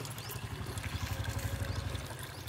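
A small engine running steadily, a low, fast-pulsing rumble.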